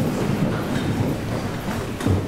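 Steady low rumbling background noise without speech.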